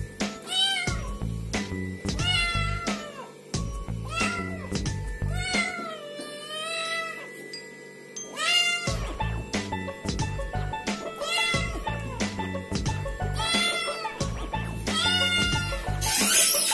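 Kitten meowing over and over, a high meow every second or two, with one long wavering meow about six seconds in. Background music with a steady beat plays underneath.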